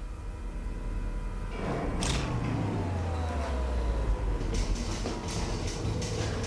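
Horror-film soundtrack: a low rumbling drone, a sudden hit about two seconds in followed by a slowly falling tone, then rapid crackling ticks near the end.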